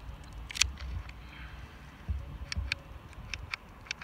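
Key turning back and forth in a VW T4 door-handle lock barrel: a string of irregular light clicks from the cylinder and its latch lever, denser in the second half. The barrel, re-matched to the key and just lubricated, spins freely.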